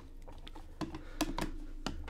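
Hard plastic PSA graded-card slabs clicking and knocking against one another as they are handled in a stack: a handful of separate sharp clicks spread over the two seconds.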